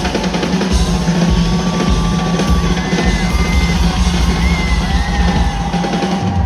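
Live rock drum solo on a drum kit: dense, fast drumming with heavy kick drum, over a held low note. A few high gliding tones sound above it.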